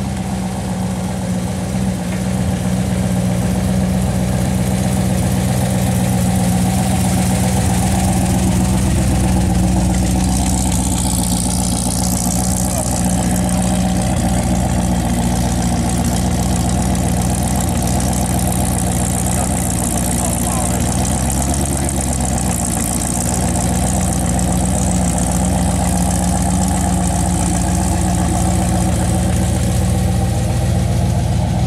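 Hot-rod car engine running steadily at low revs while the car creeps along at walking pace, a deep, even note throughout.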